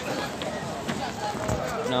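Voices of people talking in the background outdoors, with a single low thump about one and a half seconds in.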